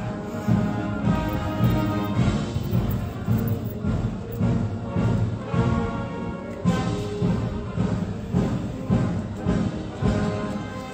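Marching band playing a march in the street, held notes over a steady drum beat of about two beats a second.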